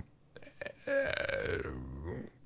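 A man's low, drawn-out throat sound lasting over a second, much quieter than his speech, after a couple of faint clicks.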